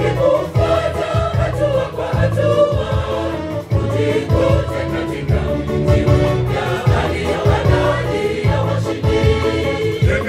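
A large choir singing a Swahili gospel song into microphones, many voices together over a steady low beat.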